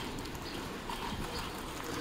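Footsteps on a city sidewalk, a run of light, irregular clicks, over the low, steady rumble of street traffic.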